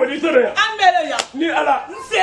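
A woman talking in an animated voice, with one sharp smack a little over a second in.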